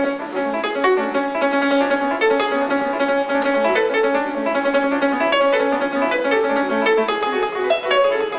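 A music school chamber group playing an instrumental piece, a steady run of several overlapping sustained notes.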